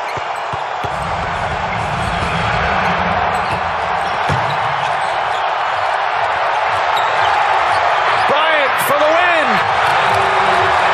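Basketball arena sounds: the steady din of a large crowd, with a low bass beat coming in about a second in and a few high rising-and-falling squeals near the end.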